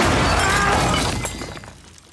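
A sudden loud bang as an airbag hidden under a toilet fires, followed by a crashing, clattering burst of breakage that fades out after about a second and a half.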